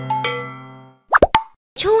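The last notes of a cartoon jingle played on bells or mallets ring and fade away. A little past the middle comes a quick cartoon sound effect: a short pop that slides up and back down in pitch. Near the end a high, sing-song cartoon voice starts speaking.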